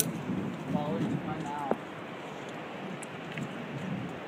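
Wind on the microphone, a steady rushing noise, with brief faint voices in the first half and a single sharp click just under halfway through.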